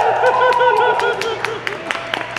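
Audience laughing, with scattered clapping mixed in, easing off a little toward the end.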